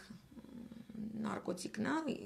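A woman's voice: a short, quieter pause, then wordless voiced sounds that rise and fall in pitch through the second half.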